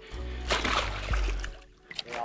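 Background music over water splashing in the shallows, as a caught trout thrashes at the shoreline.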